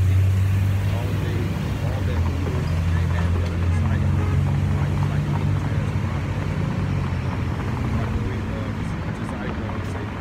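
Street traffic dominated by a box truck's engine running close by, a low steady hum that rises in pitch about three seconds in as the truck pulls away, then fades near the end.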